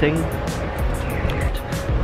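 Background music over the noise of road traffic on a city street, with the last syllable of a spoken word at the very start.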